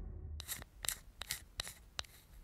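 The low rumble of the intro music dies away, then five short, sharp snipping strokes follow at an even pace of about two and a half a second, like a scissors-cut sound effect.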